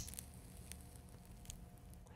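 Near silence: a faint low hum after a sharp click right at the start, with a couple of faint ticks.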